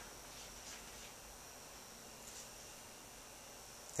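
Faint, steady, high whine of a small battery-driven DC motor spinning at about 2,800 RPM, barely above room hiss.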